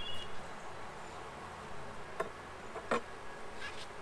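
Honeybees buzzing steadily around an opened hive, with a few short sharp clicks about two and three seconds in.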